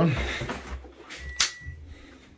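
A Glow-worm boiler being switched on: a single sharp click about a second and a half in, with a short high beep as its control panel powers up.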